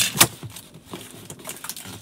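Cardboard book box being handled and folded against a tabletop: two sharp knocks right at the start, then light scrapes and taps.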